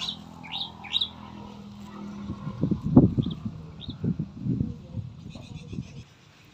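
Small birds chirping: a quick run of short high chirps in the first second, then two more about three and four seconds in. Irregular low thumps and rumbling sound underneath, loudest around the middle.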